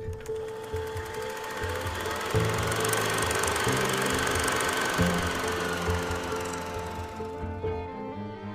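Logo intro music: a held tone and shifting low bass notes under a dense rattling noise. The rattle fades out shortly before the end.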